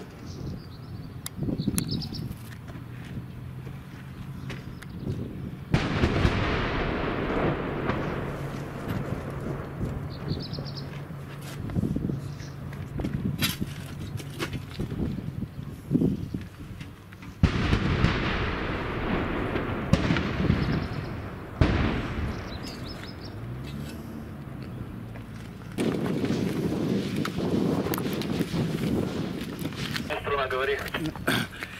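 Gunfire and shell explosions from nearby fighting: a series of sharp cracks and bangs, some followed by several seconds of rumbling noise.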